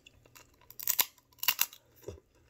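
Two wet sucking slurps from a mouth drawing on a piece of crab meat, one about a second in and another about half a second later.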